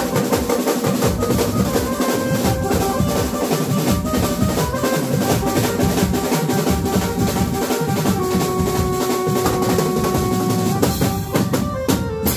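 Live band playing dandiya music: an acoustic drum kit with toms and cymbals keeps a busy rhythm under held notes from a Roland keyboard. The playing breaks off briefly near the end, then comes back in with a hit.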